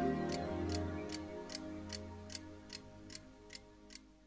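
A clock ticking steadily, about two and a half ticks a second, while soft background music fades out beneath it during the first couple of seconds, leaving the ticks on their own.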